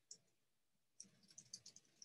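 Faint, rapid clicking of computer keys: a single click just after the start, then a quick run of clicks from about a second in.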